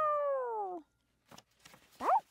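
Cartoon cat meow sound effect: one long call sliding down in pitch that fades out a little under a second in, followed by a few faint soft ticks.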